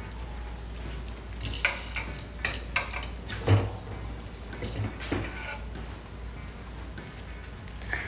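Scattered light knocks and clicks as a wooden honey frame is handled and set into the basket of a stainless-steel two-frame hand-crank honey extractor, with one heavier thump about three and a half seconds in.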